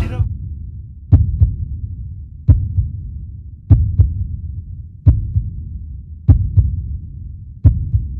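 A heartbeat sound effect: six deep doubled thumps, about 1.3 s apart, over a steady low rumble.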